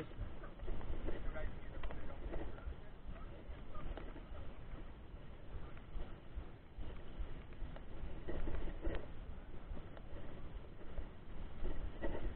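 Mountain bike riding on a rough dirt road: a steady rumble of wind on the microphone and tyres on the gravel, with faint voices of other riders now and then.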